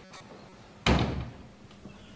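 Wooden glass-panelled door pushed shut: one sharp loud thud about a second in, dying away within half a second.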